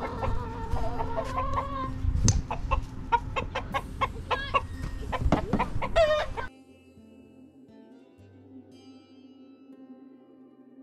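Backyard chicken flock clucking and squawking with many short, overlapping calls. About two-thirds of the way through it cuts off suddenly, leaving faint music.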